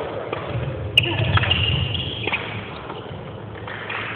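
A badminton racket strikes a shuttlecock with one sharp crack about a second in, then a long high squeak of court shoes on the hall floor, with a few lighter taps. Voices chatter behind it in a large, echoing hall.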